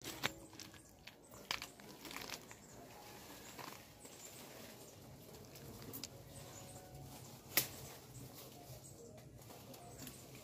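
Faint rustling of leaves and snapping and creaking of branches as a man climbs in an ackee tree, with scattered sharp cracks. The loudest crack comes about three-quarters of the way through.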